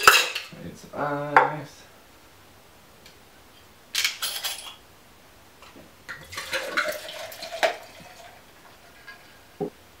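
A stainless steel cocktail shaker clanks and clinks as it is opened and handled, with a sharp clank at the start and short metallic clinks about a second in and around four seconds. About six seconds in, liquor is poured from a glass bottle into the metal shaker for over a second.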